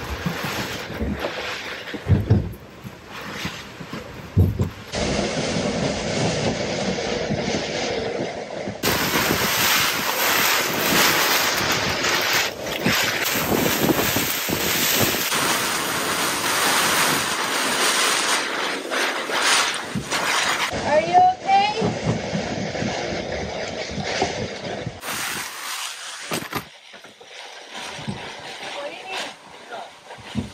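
Gale-force wind and rain on a moored sailboat: knocks and bumps in the cabin for the first few seconds, then a loud rush of wind and rain with wind buffeting the microphone from about nine seconds in, easing off near the end.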